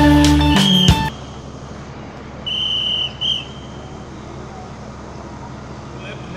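Intro music cuts off about a second in. Then a coach's whistle is blown twice, a blast of about half a second followed by a short one, over steady outdoor background noise.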